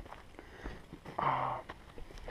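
A hiker's footsteps scuffing and knocking on a rocky dirt trail, with a short, low, voiced breath, a sigh-like 'hmm', a little after a second in.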